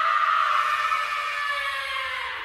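Cartoon comedy sound effect: a high, sustained tone that drifts slightly downward in pitch.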